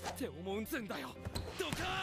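Volleyball anime audio at low volume: a character speaking in Japanese over background music, with a couple of sharp thuds of a volleyball being struck.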